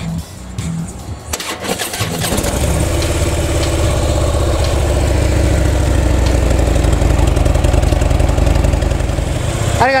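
Harley-Davidson Ultra touring motorcycle's air-cooled V-twin starting about two seconds in, then idling loud and steady with an even low pulse.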